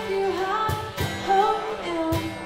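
Live acoustic duo: a woman singing a melody over strummed acoustic guitar, with a couple of sharp hand strikes on a cajon keeping time.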